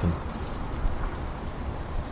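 Steady rain ambience: an even hiss with a fine low crackle, without pitch or rhythm.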